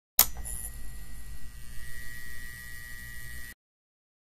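Electrical hum sound effect, as of a light bulb switching on: a sharp click, then a low hum with a steady high whine that cuts off suddenly near the end.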